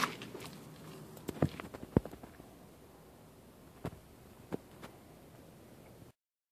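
A few sharp knocks and clicks over a faint background hiss, with the engine off: handling noise from a hand and camera bumping against the mower's body and clutch. The loudest knock comes about two seconds in.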